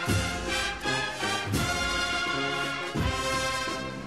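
Brass music with drums: sustained brass chords broken by several heavy drum strokes.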